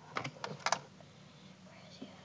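A few light, sharp clicks and taps in the first second, then quiet: small hand-held objects being picked up and handled.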